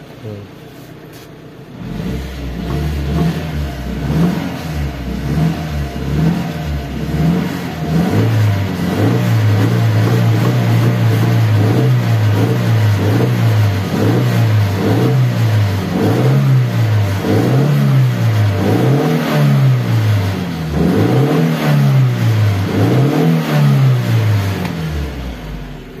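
Suzuki APV van's four-cylinder petrol engine being revved in place, first held up and then blipped in quick rises and falls about once a second for much of the time. The revs pick up cleanly with no stumble: the misfire has been cured by a new ignition coil and spark plug leads.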